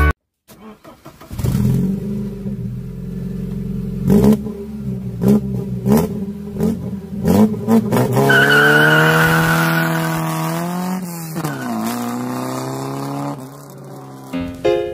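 A Ford saloon car's engine catches about a second in and idles. It is blipped several times in quick succession, then given a longer rev that rises and falls, dips, and picks up again before settling.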